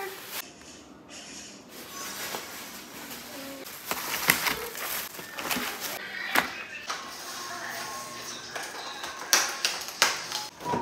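Plastic grocery bags rustling while plastic strawberry clamshell containers are handled and set down on a countertop, giving a few sharp clicks and knocks, with a cluster of them near the end.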